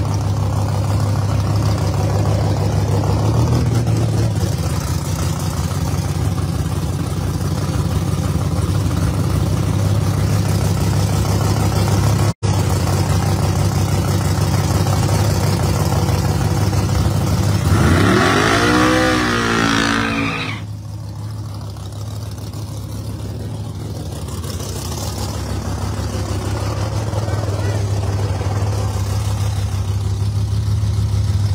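Drag-race car engines running at idle close by, a steady low drone. About two-thirds of the way through, one engine revs up in a rising sweep and then drops back suddenly.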